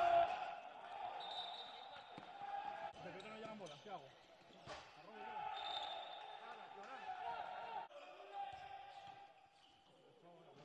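Live court sound of an indoor handball match: a handball bouncing and thudding on the court amid players' shouts, with a few sharp impacts.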